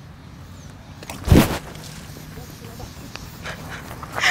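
A bucketful of water thrown into a man's face: one short, loud splash about a second in, over a low steady outdoor background.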